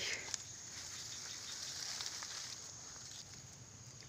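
Faint rustling of tall swamp grass and marsh plants being pushed through and handled, with a few light snaps.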